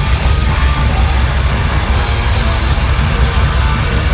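Heavy metal band playing live: distorted guitars and drum kit, loud and continuous without a break.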